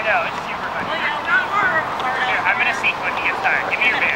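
Several people's voices calling out and shouting, overlapping one another, over a steady background noise.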